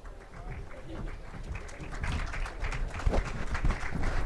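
Audience applause in a large tent, starting scattered and growing denser and louder about two seconds in, over a low murmur of crowd voices.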